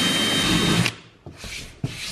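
Ryobi cordless drill boring a hole through the hard plastic roof of a UTV, running with a steady whine and cutting off sharply just under a second in as the hole goes through. A few light scrapes and clicks follow.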